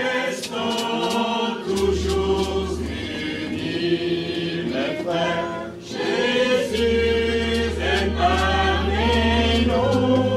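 A small mixed group of women and men singing a hymn together in held phrases. A low steady bass note sounds under the singing twice, about two seconds in and again from about seven seconds in.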